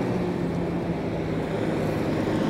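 A steady, low engine hum, holding one pitch throughout.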